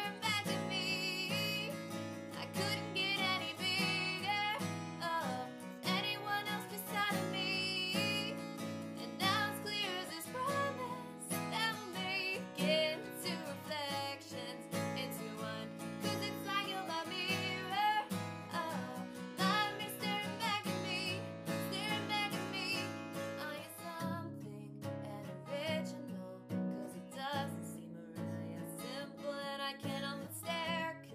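A woman singing a pop song, accompanying herself on a strummed acoustic guitar.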